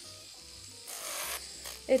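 Kupa UPower 200 electric nail drill running with a sanding band, its motor giving a steady hum, and the band briefly rasping against an acrylic nail about a second in.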